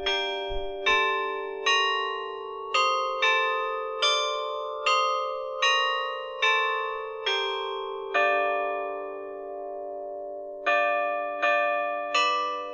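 Tuned bells playing a slow melody, one note struck about every 0.8 seconds, each ringing on as the next sounds. A longer note rings out from about two-thirds of the way through before the strikes resume near the end.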